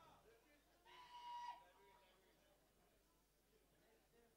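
Near silence, with a faint voice calling out briefly about a second in.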